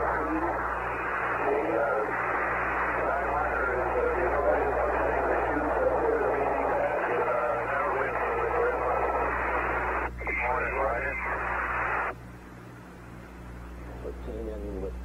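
Radio transmission of the splashdown recovery loop: hiss with faint, unintelligible voice under it. It breaks briefly about ten seconds in, comes back, then cuts off shortly before the end, leaving a low steady hum on the line.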